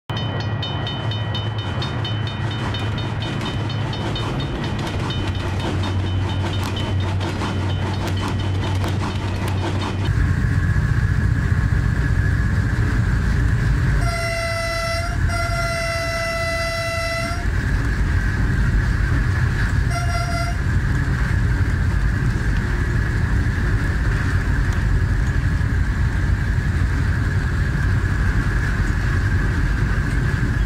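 Diesel locomotive running along the track, heard from its front, with a steady low rumble. Its horn sounds one long blast, briefly broken, about fourteen seconds in, and a short toot about twenty seconds in. Before that, for the first ten seconds, there is a steady pitched ringing with fast even ticks.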